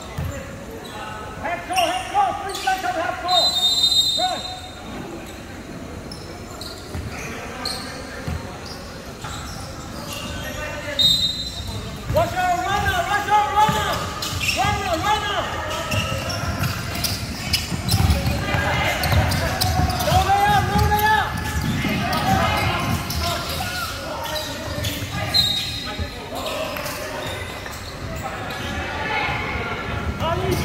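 A basketball game on a hardwood court: the ball bounces and players move while voices shout and call indistinctly, all echoing in a large hall.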